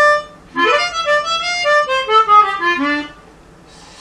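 Chromatic harmonica playing a blues lick: a short note at the start, then a quick run of draw and blow notes from about half a second in, with a slide into the six draw, that works its way down in pitch to the low holes and stops about three seconds in.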